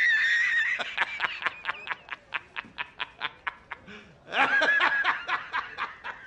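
A man laughing hard. It opens with a high squealing wheeze, then a run of quick breathy cackles about five a second, then a second high squealing burst about four seconds in that trails off.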